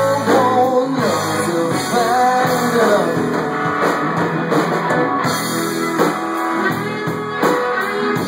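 Live rock band playing an instrumental passage: electric guitars over bass and drums, with a lead line that bends up and down in pitch.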